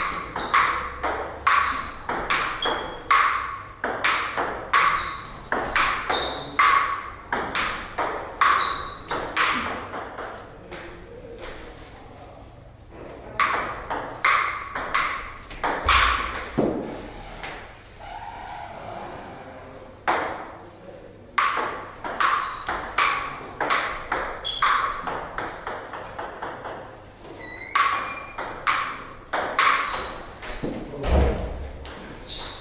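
Table tennis rallies: the ball clicking off the paddles and the table top in quick runs of alternating hits. There are short pauses between points, with a longer gap about two-thirds of the way through.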